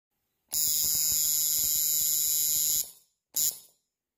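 Electric tattoo machine buzzing: one run of about two seconds, then a short second burst.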